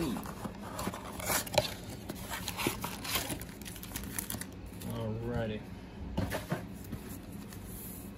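Cardboard blaster box and foil-wrapped trading card packs being handled: scattered light crinkles and small knocks as the packs are pulled out and set down. A short murmur from a voice comes about five seconds in.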